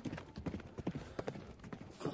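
A string of light, irregular clicks or taps, about three or four a second, made by the man telling the story.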